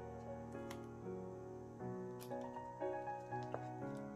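Background music: a slow solo piano arrangement of a K-pop song, notes changing about once a second. A couple of faint taps or rustles from a cardboard album sleeve being handled come through about a second in and again about halfway.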